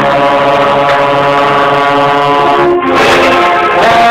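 Concert band holding long sustained chords, with a trombone played right at the microphone as the loudest part; the chord breaks off briefly near three seconds in and a new one is held.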